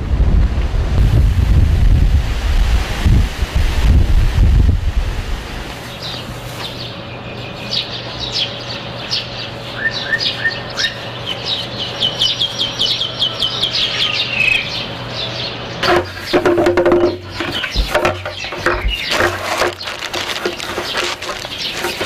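Wind buffets the microphone for about the first five seconds. Then small birds chirp over a steady low hum. In the last six seconds there is rapid rustling and clicking as plastic bags are handled.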